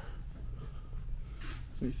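Low steady rumble of indoor room tone between words, with a faint breath about one and a half seconds in; a man starts speaking near the end.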